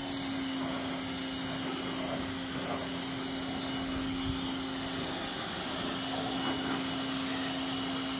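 Pressure washer running and spraying a water jet onto an engine: a steady hiss with a constant motor hum underneath, the hum dropping out for a moment a little past the middle.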